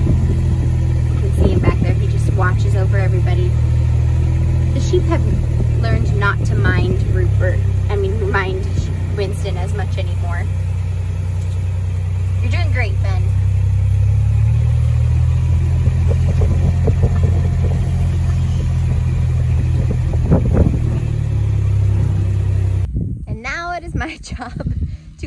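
Utility vehicle's engine running steadily with a low drone, with indistinct voices over it. It cuts off suddenly near the end.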